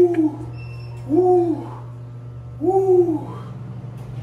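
A man's voiced 'hoo' exhales through pursed lips, three in a row about a second and a half apart, each rising and then falling in pitch. He is breathing through the cold of a cold plunge tub.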